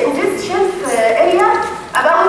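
Speech only: a woman lecturing.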